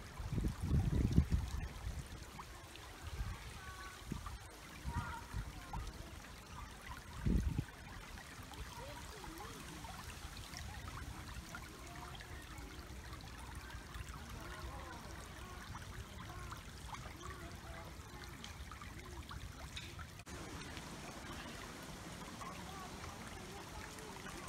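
Shallow river trickling steadily over stones. Low thumps, the loudest sounds, come about a second in and again about seven seconds in.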